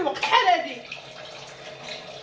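Water running steadily from a kitchen tap into the sink, after a woman's voice for the first half second.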